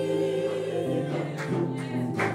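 Gospel choir singing together, holding a long chord that changes about a second and a half in.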